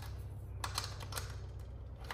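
Small metal open-end wrench clicking against a nut in short strokes as the nut is tightened onto a threaded rod, a series of light, irregularly spaced clicks.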